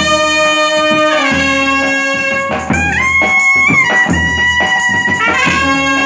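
Indian brass band playing a melody in long held notes on trumpet and euphonium, stepping from note to note, with snare and bass drums beating under it.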